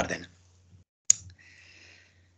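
A single sharp click about a second in, followed by a faint brief hiss, just after a word ends.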